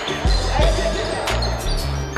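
Basketball game on a wooden gym floor: ball bounces and sneakers squeaking, over background music.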